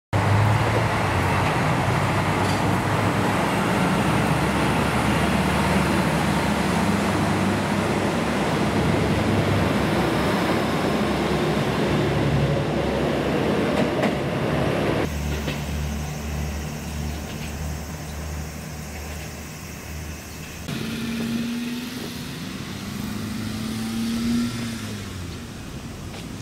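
KiHa 185 diesel railcar engines running loudly and steadily at a station platform as the limited express readies to leave. The sound then changes abruptly, first to a quieter low pulsing engine sound about halfway through, then to a hum with a slowly rising tone in the last few seconds.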